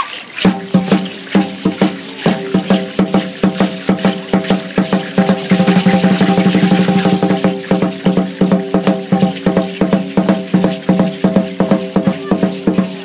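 A tall standing drum (huehuetl) beaten in a steady driving rhythm of about three to four strokes a second, each stroke ringing with a low tone. Near the middle the strokes run together into a fast roll for a second or two before the steady beat returns.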